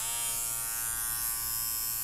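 Electric nose hair trimmer switched on, its small motor running with a steady buzz that settles in pitch just after it starts.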